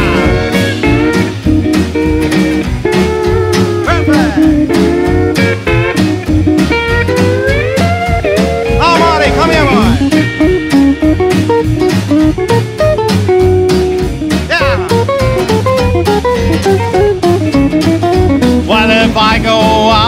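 Instrumental break in a rockabilly song: a guitar solos with sliding, bending notes over a steady beat of upright bass and rhythm guitar.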